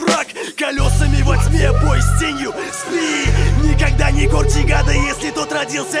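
Russian-language hip-hop track: a rapped vocal over a beat with a deep, sustained bass line that drops out briefly now and then.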